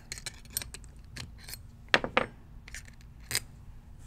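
Small metal clicks and clinks as a paintball marker's ram assembly is worked out of the gun body by hand. A scatter of light ticks runs through, with a couple of sharper clicks about two seconds in and another a little later.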